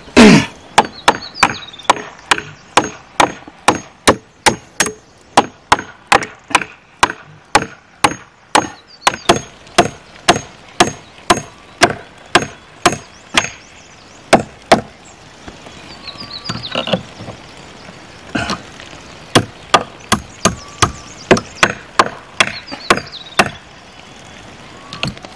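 Claw hammer driving nails into rough wooden planks: a steady run of sharp blows, about two to three a second, then a pause of a few seconds before another run of blows.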